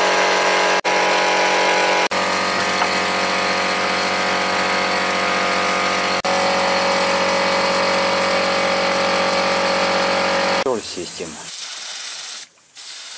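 Electric piston air compressor running with a steady hum as it pumps up pressure. The motor stops near the end, and a spray gun's hiss of air and liquid spray follows.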